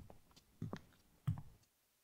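Footsteps on a hard floor, three steps about two-thirds of a second apart, ending about one and a half seconds in.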